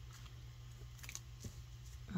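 Faint handling of paper and lace as they are pressed down with the fingers, with a few soft, light clicks.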